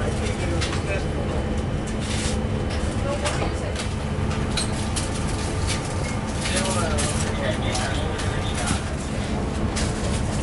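Steady low hum of an Airbus A330-300 cabin, with scattered light clicks and knocks and faint voices in the background.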